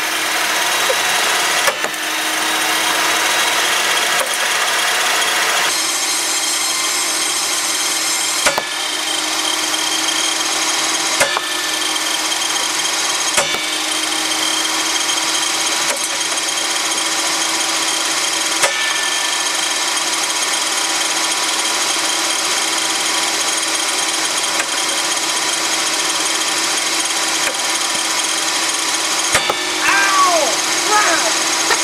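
Benchtop table saw running at speed with a steady motor whine. Sharp cracks come every few seconds, about six in all, as wood blocks dropped onto the spinning blade are struck and flung off.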